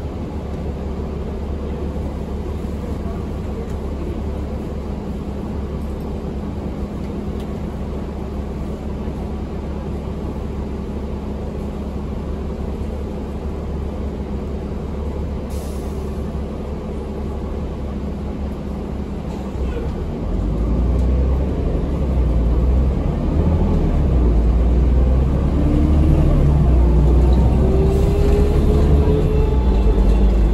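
Cabin sound of a 2006 New Flyer D40LF diesel transit bus: the engine runs at a steady low hum for about twenty seconds. Then it gets louder and a whine climbs steadily in pitch as the bus accelerates.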